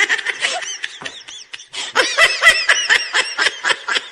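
High-pitched laughter in quick repeated bursts, breaking off briefly about a second and a half in, then picking up again.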